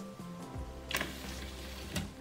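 Background music, with one short click about a second in as the motor-driven model sliding door finishes closing by itself when its 555 timer runs out.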